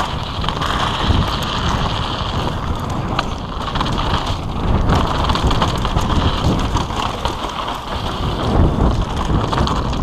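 Wind buffeting an action camera's microphone on a mountain bike descending at speed, with tyres rumbling and crunching over gravel and dirt and the bike rattling over the bumps.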